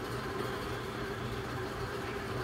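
Steady background hum and hiss, with a faint constant tone running through it; no distinct event.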